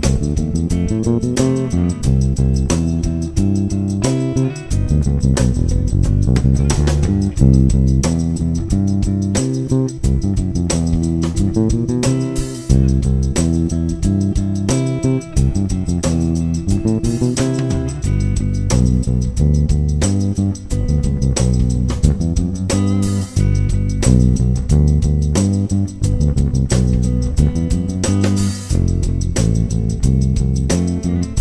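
Electric bass guitar played fingerstyle, running a quick line of eighth and sixteenth notes that climbs and falls through the chord changes, with drums keeping time in the background.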